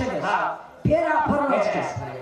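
A woman singing a Banjara bhajan into a stage microphone: a sung phrase with bending notes, broken by a short pause about half a second in.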